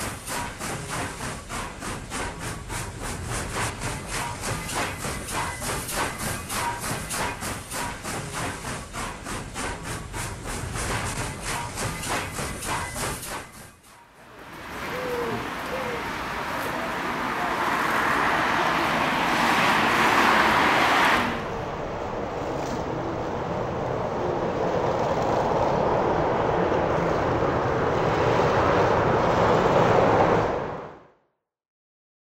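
Train wheels clacking over rail joints in a fast, even rhythm for about the first half. The clacking stops suddenly and gives way to a steady outdoor street noise with no distinct events.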